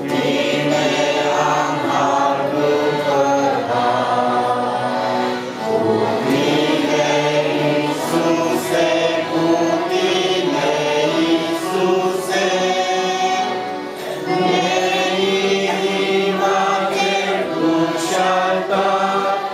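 A group of voices singing a Christian song together with musical accompaniment, pausing briefly between phrases.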